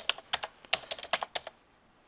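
Typing on a computer keyboard: a quick, irregular run of key clicks that stops about three-quarters of the way through.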